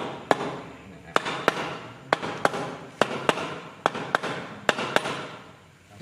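A series of sharp knocks, about two a second and unevenly spaced, each dying away quickly.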